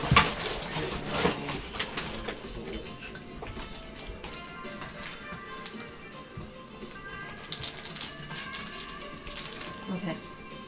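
Foil trading-card packs crinkling and clicking against each other as they are handled, densest in the first two seconds and again briefly near the end, over background music.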